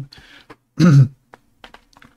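A man clearing his throat once, about a second in.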